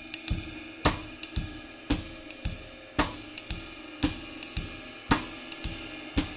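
Drum kit playing steady jazz swing time: a ride-cymbal pattern with a cross-stick click on the snare rim on beat 4, in place of a snare backbeat on 2 and 4. A stronger hit comes about once a second over the ringing cymbal.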